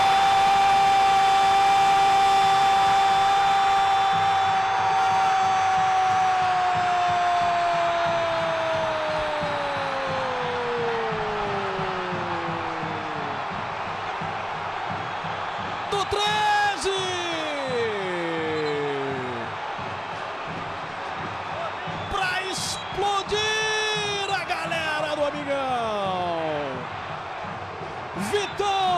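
A football commentator's drawn-out goal cry: one long held note for about eight seconds that then slides down in pitch as his breath runs out, over a cheering stadium crowd. In the second half come several more shouted, sliding phrases.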